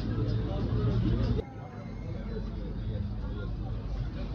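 Background chatter of several people talking at once. It cuts off abruptly about a second and a half in to quieter, more distant voices over a low steady hum.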